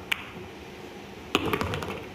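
Pool cue tip striking the cue ball with a sharp click. About a second and a half later comes a quick cluster of clicks as the banked cue ball knocks into the object balls.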